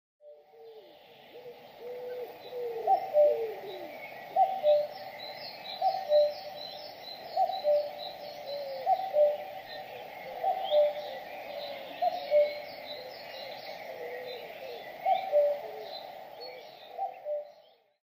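Birdsong: a low two-note call, the first note higher than the second, repeating about every second and a half over scattered high chirping from smaller birds.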